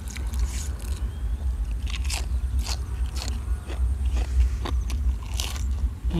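Close-mic crunchy chewing and biting of raw cabbage with spicy apple-snail salad: about a dozen irregular crunches, roughly two a second, over a steady low rumble.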